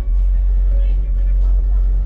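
Rap music played loud through a car audio system's bank of Sundown subwoofers, the deep bass far stronger than the faint vocals above it.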